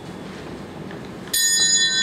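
A bell struck once about 1.3 seconds in, then ringing on with several steady high tones; before it, only faint room hiss.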